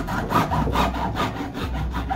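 Hacksaw cutting through a moulded plastic spigot on a plastic water tank, in quick even back-and-forth strokes at about four to five a second.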